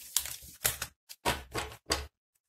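Tarot cards being handled on a tabletop: an irregular run of about six sharp clicks and taps as a deck is picked up and gathered in the hands.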